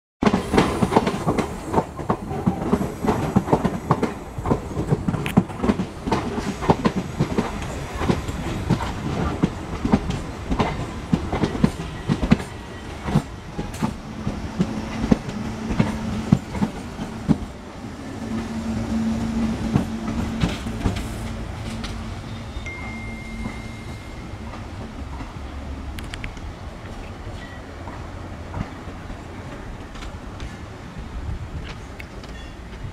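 Mainline electric multiple unit (MEMU) train running past, its wheels clattering over rail joints and points in fast, irregular clicks for the first dozen seconds. The clatter then settles into a steadier rumble with a low hum through the middle, and fades toward the end.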